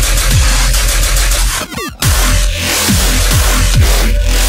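Heavy deathstep/dubstep music: dense distorted bass with a kick drum about twice a second. Just before the two-second mark the beat briefly drops out under a falling pitch sweep, then comes back in full.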